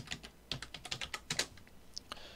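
Typing on a computer keyboard: a quick run of key clicks, most of them packed between half a second and a second and a half in, as a stock name is entered into a search box.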